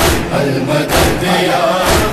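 Background chorus of voices chanting in a noha, between the lead reciter's lines, over a beat of about one thump a second.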